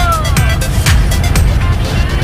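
Background music with a steady beat over heavy bass; a melody line slides downward and fades about half a second in.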